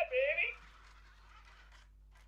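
Wonder Workshop Cue robot making a high, warbling electronic vocal chirp that ends about half a second in, followed by a faint hiss until near the end.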